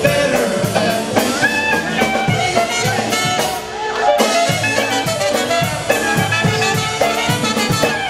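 Live polka band playing with accordion, brass and drum kit over a steady beat.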